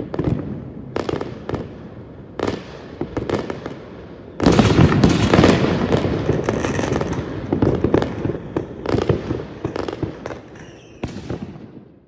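Fireworks going off: scattered bangs at first, then from about four seconds in a sudden dense run of bangs and crackling that thins out near the end.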